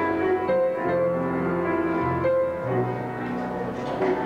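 Live keyboard music with held, piano-like chords that change about once a second: the song's instrumental introduction.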